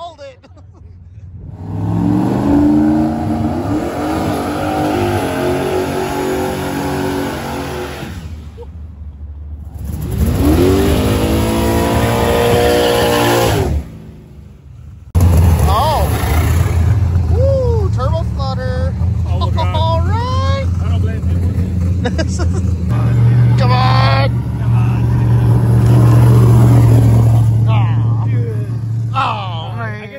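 Car engines revving hard during burnouts, in several short cuts with brief breaks between them; the revs climb and hold. From about halfway through, a GMC pickup's engine runs loud and steady, loudest near the end.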